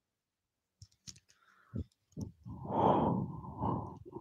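A few soft clicks of handling, then a long heavy exhale blown right onto a wired earphone microphone, starting about two and a half seconds in and lasting over a second.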